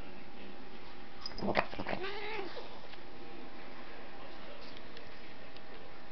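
A cat gives one brief meow that rises and falls, about two seconds in, just after a short bump. Otherwise there is only a steady faint hiss.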